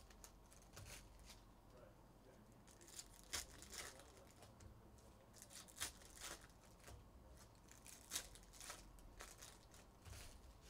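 Trading-card foil pack wrappers being torn open and crinkled by hand, faintly, with sharp crackling tears about every two and a half seconds.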